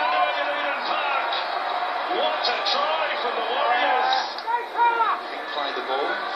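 Rugby league TV broadcast played from a screen: a man's commentary voice over stadium crowd noise, with a dull, band-limited sound as if recorded off the speaker.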